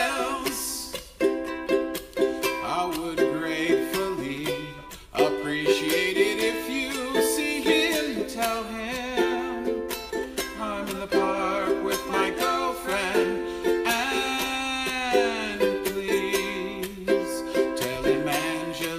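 Ukulele strummed in a steady chord rhythm, with layered wordless vocal harmony over it that slides down in pitch about three quarters of the way through.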